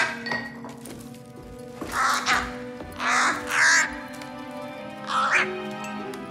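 Four harsh crow caws, at about two, three, three and a half and five seconds, over sustained notes of theme music.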